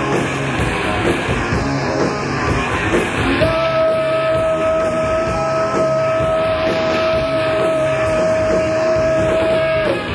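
Live noise-punk band playing a loud, dense rock song. About a third of the way in, a single high note starts and is held steady until just before the end.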